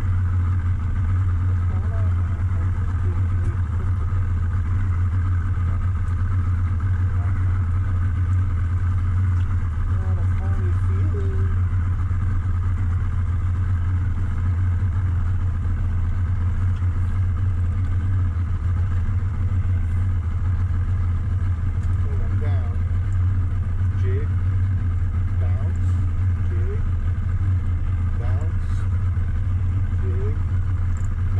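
Outboard motor idling steadily: a constant low hum that neither rises nor falls.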